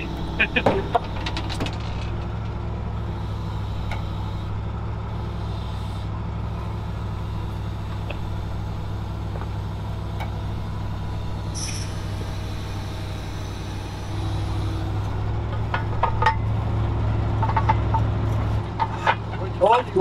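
A tow truck's engine idling steadily, its note getting louder about two-thirds of the way through. A brief hiss comes a little past the middle.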